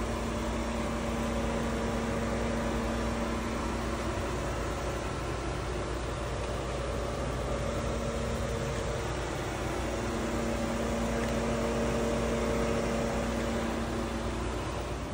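A steady mechanical hum with a few constant low tones over a faint hiss, unchanging throughout.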